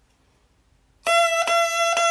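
Bassoon reed played on its own, without bocal or instrument, starting about a second in: a steady high tone tongued into repeated notes about two a second, the tongue touching the reed and releasing quickly between them.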